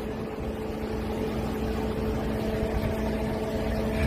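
Wind rumbling on the microphone, with a steady low mechanical hum underneath.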